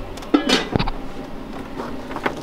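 Oreo cookies being snapped and broken apart by hand, a scattered run of small sharp cracks and crunches.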